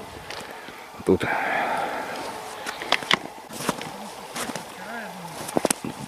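Footsteps and rustling in thin snow, with a few sharp clicks and faint mutters in between.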